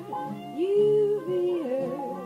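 Jazz ballad recording from an old vocal-jazz LP: a melody moving in long held notes, with accompaniment underneath.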